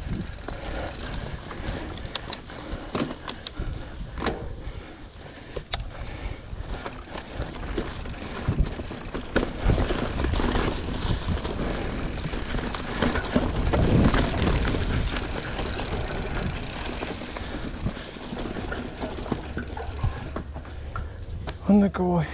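Giant Trance 29 mountain bike riding over a trail of dry fallen leaves: tyres crunching and rustling through the leaves, with scattered clicks and knocks from the bike over the ground. The noise swells louder through the middle stretch.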